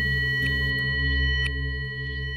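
Ambient background music: several steady ringing tones held over a low drone, with no beat.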